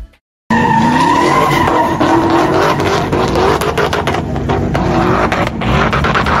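Drift car's engine running at high revs with its tyres squealing in a slide. The sound cuts in suddenly about half a second in.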